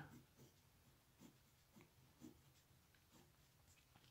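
Faint scratching of a pen writing on notebook paper, in a series of short strokes.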